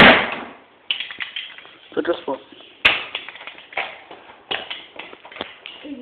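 A small hammer striking a nail against a die-cast metal toy truck, a series of sharp blows roughly once a second, the first the loudest; the nail does not go into the metal.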